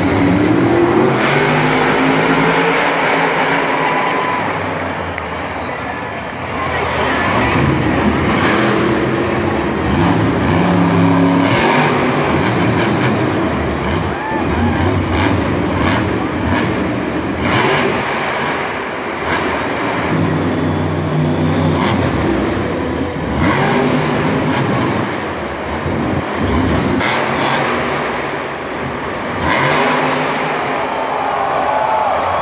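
Monster truck's supercharged V8 engine revving up and down repeatedly as the truck drives and jumps on a dirt arena track, with an echoing stadium sound.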